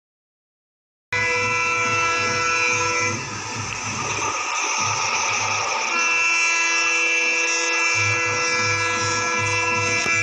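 Indian Railways diesel locomotive's multi-tone air horn sounding long, steady chords. It starts about a second in, eases off for a few seconds in the middle, then sounds again at full strength, with a low train rumble underneath.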